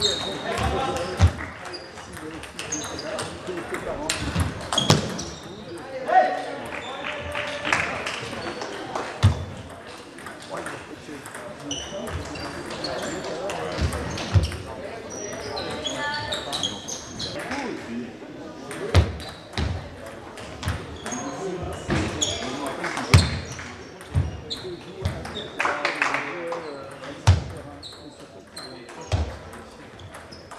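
Table tennis balls clicking off bats and tables in a sports hall, with rallies going on at more than one table, as sharp, irregular clicks. Voices and calls around the hall sound under and between them.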